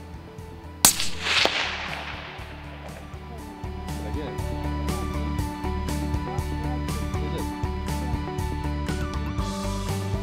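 A single .22-250 centrefire rifle shot about a second in, a sharp crack whose echo fades over a second or two. Background music plays underneath and grows louder a few seconds later.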